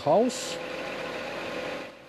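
A truck's engine running steadily behind the timber-crane work: an even mechanical hum with one held tone, after a man's voice breaks off early on.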